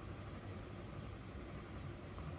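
Faint steady hiss with a low rumble underneath: the recording's background noise, with no distinct sound event.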